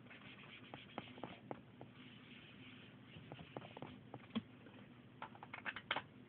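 Soft scratchy rubbing of an ink applicator working ink onto a paper tag, in patches, with scattered light clicks and taps. A single sharper knock comes about four and a half seconds in, and a quick run of clicks near the end as the hand presses onto an ink pad.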